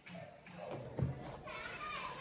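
Background voices with a single sharp knock about a second in, as the prototype shoe is handled on a wooden desk.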